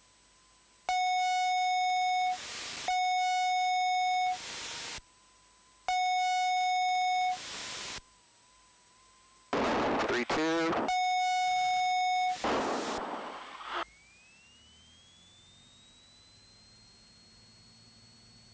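A series of loud, buzzy electronic tones: four steady tones about a second and a half each, each ending in a short burst of hiss, with a warbling stretch before the last one. After that, a faint tone rises slowly in pitch over a low hum.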